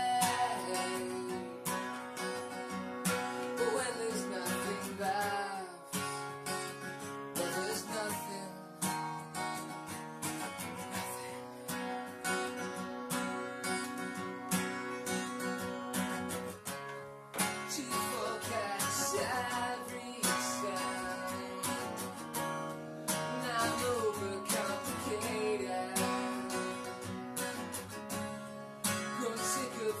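Acoustic guitar strummed steadily in an instrumental passage of a slow folk-rock ballad, with a melody line gliding and bending over the chords.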